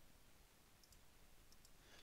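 Near silence: faint room tone with a few very faint clicks, a pair about a second in and another pair near the end.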